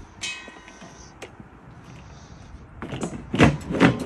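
Hard plastic propane-tank cover being handled and set back down over the tanks. There is a short high squeak at the start and a click, then a run of loud knocks and scrapes near the end as the cover goes on.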